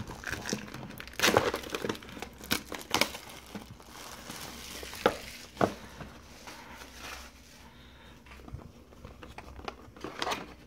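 Plastic wrapping on a sealed trading-card box crinkling and crackling as it is handled and pulled off: irregular sharp crackles, busiest in the first six seconds and thinning out after that.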